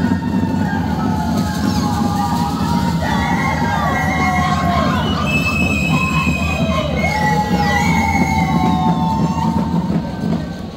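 Live Andean folk band accompanying the Shacshas dance: wind instruments play many overlapping high melodic lines that slide and waver in pitch, over steady, fast drumming.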